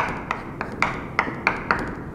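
Chalk tapping against a blackboard as short strokes are drawn quickly: a rapid string of sharp taps, about four a second, stopping shortly before the end.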